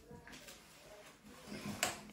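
A child's jacket zipper being worked at and catching: mostly quiet, then about a second and a half in a faint rustle of the fabric and zipper ending in a sharp click.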